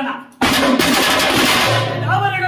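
A man's chanted verse trails off, then about half a second in the drums break into a loud, fast flourish lasting a little over a second, and the chanting starts again near the end.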